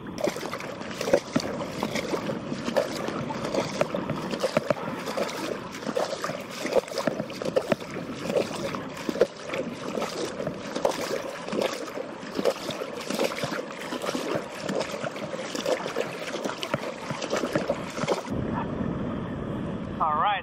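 Shallow seawater splashing and lapping close to the microphone: an irregular, crackly wash with many small splashes. It turns duller and lower about two seconds before the end.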